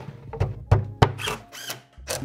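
Plywood panel being set into a plywood cabinet: three sharp wooden knocks in about the first second, close together.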